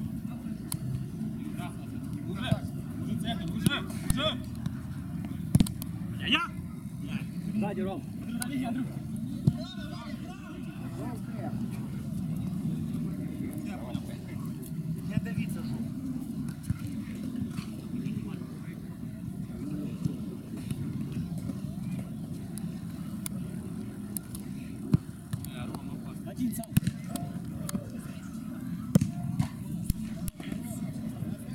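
Mini-football game: players' voices calling across the pitch, mostly in the first third, with a few sharp thuds of the ball being kicked over a steady low rumble.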